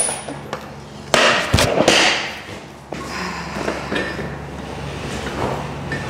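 A sudden thud with a clatter about a second in, then quieter handling and rustling noise.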